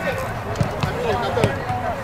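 A football thudding three times on the pitch, among shouting voices of players and spectators.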